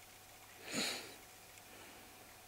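One short sniff through the nose, about a second in, over faint room tone.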